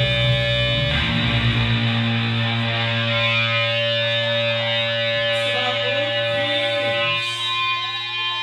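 Distorted electric guitar left ringing with sustained amp feedback at a song's end; the low end drops away about two seconds in, and wavering feedback tones drift over the held notes in the second half.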